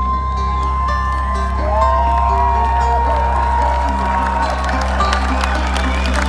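A folk metal band playing live through an open-air festival PA, holding long sustained notes over a deep steady bass drone. A crowd cheers and whoops, growing louder toward the end.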